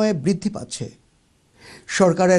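A man's voice reading the news, trailing off within the first second, then a brief pause and a sharp in-breath before he speaks again.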